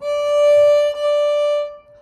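Viola bowing high D with the third finger on the A string, the top note of a D major scale, played twice as two steady notes of the same pitch with a brief break between them.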